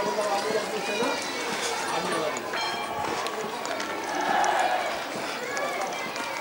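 Indistinct voices of people talking, with footsteps on an outdoor path.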